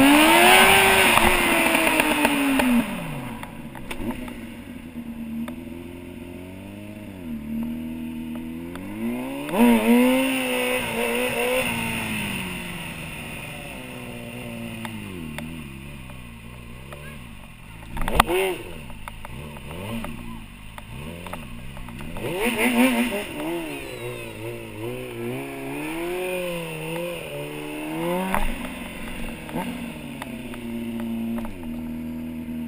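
Stunt motorcycle engine revving hard and falling back again and again under the rider's throttle, heard close up from an onboard camera. A sharp knock stands out about eighteen seconds in.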